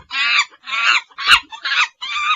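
A loud run of about five shrill, high-pitched cackling calls in quick succession, with a sharp click partway through.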